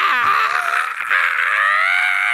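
A man's voice making a drawn-out, strained, raspy vocal noise that mimics an over-the-top sung vocal. It is held on one pitch and rises slightly in the second half.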